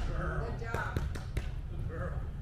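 A man's voice with four short, sharp taps or clicks in quick succession about a second in.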